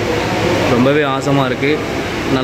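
A man's voice talking over steady background noise.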